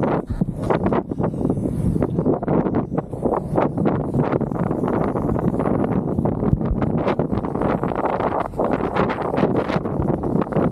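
Kite buggy rolling fast over hard-packed sand, with wind buffeting the microphone as a steady rush and frequent short clicks and rattles from the buggy's wheels and frame.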